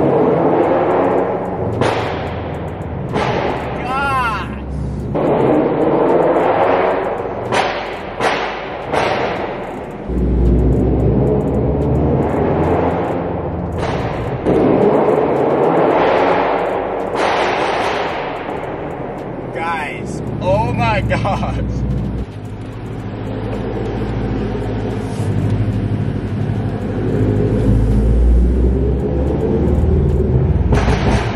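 Scion FR-S's 2.0-litre flat-four running through a Tomei titanium header and muffler exhaust with a pops-and-bangs tune: the engine revs and eases off at low speed, with repeated sharp pops and crackles from the exhaust as it comes off throttle.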